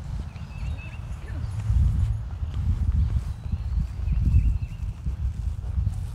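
Wind buffeting the microphone outdoors: an uneven low rumble that rises and falls in gusts. Faint short bird chirps come through twice, near the start and about four seconds in.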